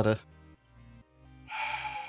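A man's loud breath, a breathy rush of air lasting under a second, starting about one and a half seconds in, over faint background music with steady held notes.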